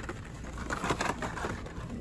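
Hot Wheels blister cards being handled on a store's metal pegboard hooks, with a few scattered light clicks and rustles over steady store background noise.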